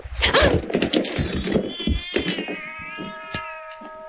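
A cat yowling and screeching for about two seconds, with a few knocks, as the cat is tripped over in a radio-drama struggle. From about halfway through, a held musical chord takes over.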